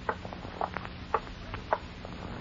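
Radio sound-effect footsteps: a string of light, quick taps, a few a second and unevenly spaced, over the steady low hum of an old transcription recording.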